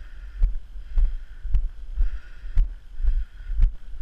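Footsteps on grassy ground at about two a second, each one a low thud picked up through a body-worn camera, over a faint steady hiss.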